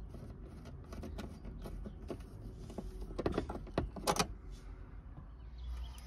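Hand screwdriver working the screws of a metal heater-valve bracket: light metallic clicks and taps, with a few sharper knocks about three to four seconds in.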